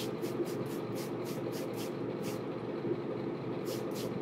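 Trigger spray bottle misting water onto hair: a quick run of short hissing sprays, about four a second, then a pause and two more sprays near the end.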